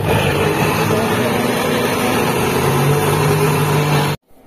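Electric mixer grinder (mixie) running steadily at speed, its steel jar grinding onion, ginger, garlic and green chilli into a wet masala paste. A loud, even motor hum with a churning, rattling grind.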